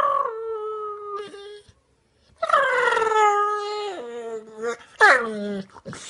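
A sleeping dog letting out long, squeaky whines: three drawn-out calls, each sliding down in pitch, the last one short and dropping steeply.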